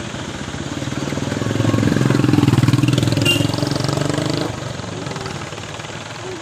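Motorcycle engine running, getting louder to a peak about two to three seconds in and then dropping back at about four and a half seconds.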